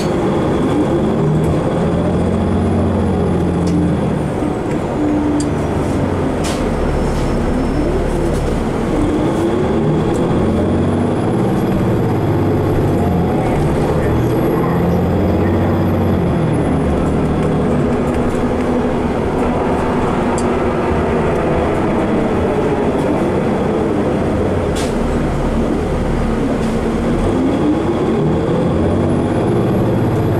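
Interior of a 2015 Nova Bus LFS city bus under way: engine and drivetrain running steadily, climbing in pitch several times as the bus accelerates through its gears. A high whine rises and falls with it, and the cabin gives occasional sharp rattles.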